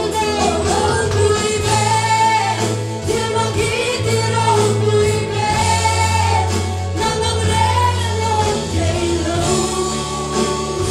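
Congregation singing a worship song together over instrumental accompaniment, with sustained low bass notes that change every second or two.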